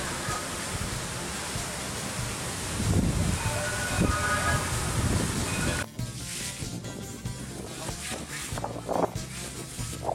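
Steady rushing and splashing of a large fountain's many water jets, with crowd voices underneath. About six seconds in it cuts off abruptly and gives way to quieter music.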